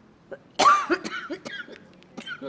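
A woman coughing: one strong cough about half a second in, followed by several shorter, weaker coughs.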